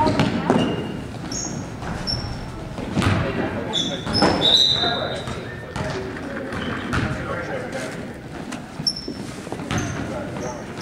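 Basketball being dribbled on a hardwood gym floor, with thuds of play and short high sneaker squeaks from players running, over the voices of players and spectators.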